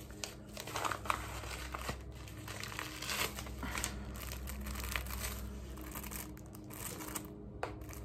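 Thin clear plastic bags crinkling in the hands in irregular rustles as they are handled and held up.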